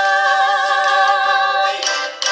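Two women's voices singing unaccompanied, holding one long note together with vibrato, which cuts off shortly before the end.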